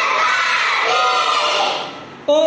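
A class of young children singing an Arabic song together in chorus, loud and half-shouted, the voices trailing off near the end.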